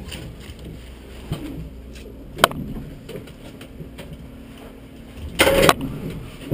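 Touring race car's engine idling low and steady in the cockpit. A sharp click comes about two and a half seconds in, and a short, loud rush of noise comes near the end.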